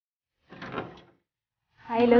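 A room door being opened by its handle: a short rattling clatter of the latch about half a second in, lasting about half a second. A voice starts just before the end.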